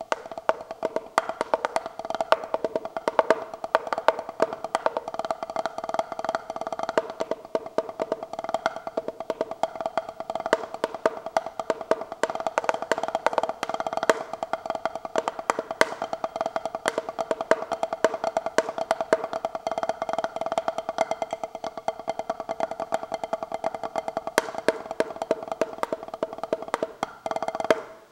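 Wooden drumsticks playing a fast rudimental improvisation on a practice pad, moving between the pad surface and its sides for different clicking, wood-block-like sounds. A dense, unbroken run of strokes with a steady ring beneath it, stopping just before the end.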